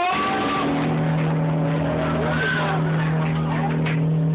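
Gospel accompaniment: a low chord held steady from just after the start, with a voice sliding up and down in pitch above it.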